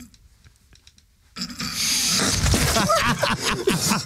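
A quiet pause of about a second and a half, then a sudden spluttering burst as a mouthful of water is spat out into a metal dustbin, followed by laughter.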